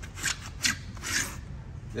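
Work boots pressing and shifting on waterlogged pontoon-boat deck carpet: three short scuffing sounds about half a second apart. The carpet is soaking wet, holding moisture down to the plywood beneath.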